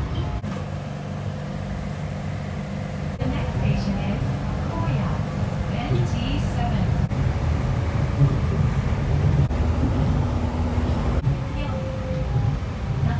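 Nippori-Toneri Liner, a rubber-tyred automated guideway train, running along its elevated guideway, heard from inside the front of the car: a steady low running hum with level motor tones.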